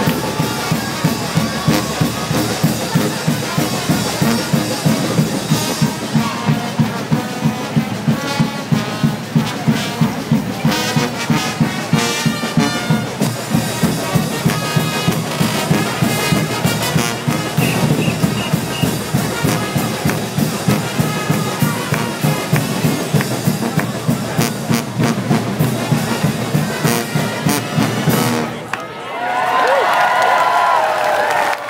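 Street brass band of trumpets, trombones, sousaphone and drums playing a loud, fast number over a steady driving beat. The music breaks off near the end and the crowd starts cheering.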